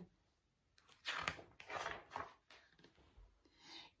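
Faint rustling of a large paperback picture book's pages being turned and handled: a few brief papery swishes from about a second in, and another small one near the end.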